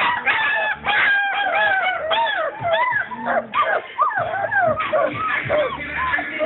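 A four-week-old basset hound puppy crying in a fast run of high, rising-and-falling yelps and whines, several a second.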